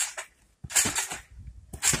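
Trampoline mat and springs taking a person's bouncing: sharp impacts about a second apart as he lands and pushes off.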